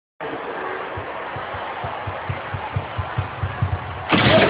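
Gymnast's running footfalls on a vault runway, starting about a second in at about four to five steps a second and quickening, over the steady murmur of an arena crowd.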